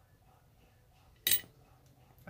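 Faint background, then about a second and a quarter in a single short, sharp puff of breath from a man smoking a tobacco pipe.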